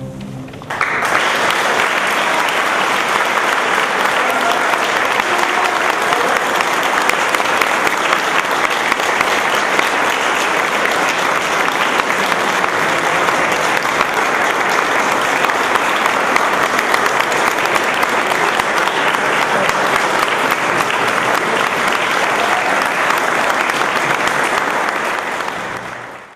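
Audience applause breaking out about a second in, as the last chord of the string orchestra and cello dies away, then going on steadily and fading out at the very end.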